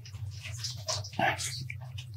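A man sipping and swallowing water from a glass close to the microphone, with short breaths and gulps in the middle of the stretch. A steady low hum runs underneath.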